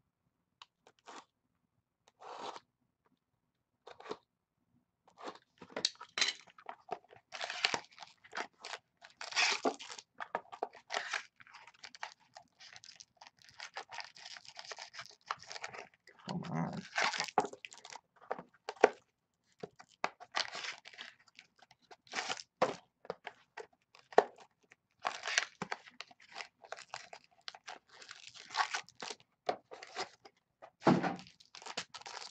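Cardboard hobby box and foil pack wrapping being torn open and crinkled by hand: irregular crackling and tearing, a few short bits at first, then nearly continuous from about five seconds in.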